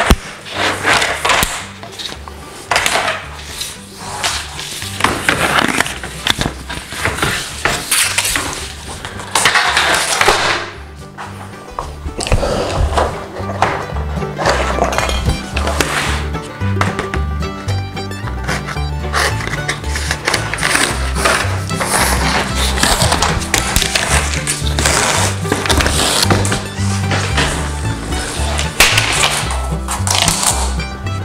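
PVC skirting boards being handled and taken apart, their snap-in middle strips pulled out with scraping and clattering of plastic. Background music with a steady beat comes in about halfway through.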